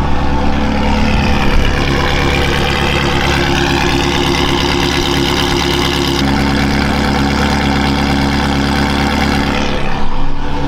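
Ferrari 360 Modena's 3.6-litre V8 idling steadily through a PowerCraft aftermarket exhaust with its valves open.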